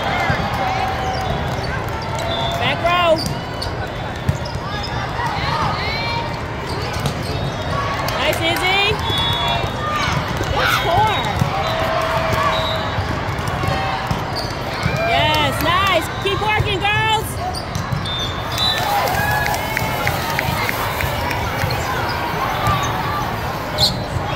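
Volleyball rally: sharp ball hits, about three seconds in and again near the end, with short high squeaks of shoes on the court, over the steady chatter of players and spectators.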